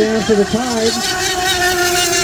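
Nitro engines of 1/8-scale RC unlimited hydroplanes running at racing speed, a steady high-pitched whine that holds one pitch.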